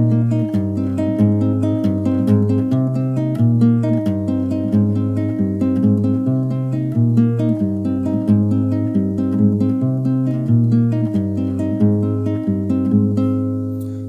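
Classical guitar fingerpicked in a steady pattern over a C minor barre chord at the third fret: thumb bass notes moving on the fifth and sixth strings under index and middle fingers alternating on the third and second strings. The last chord rings and fades near the end.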